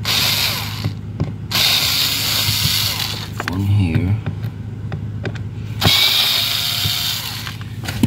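Cordless power screwdriver running in three short bursts, backing out the screws that hold a plastic HVAC blend door actuator.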